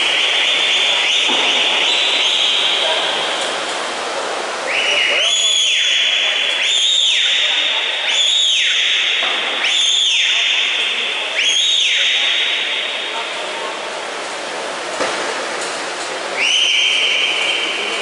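Spectators' shrill whistles over crowd noise in a pool hall: one long whistle at the start, a quick run of about five whistles a second or so long in the middle, and another near the end, cheering the swimmers on.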